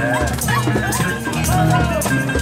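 Live band music with a steady beat and bass line, over which a high melodic line moves in short phrases that glide up and down in pitch.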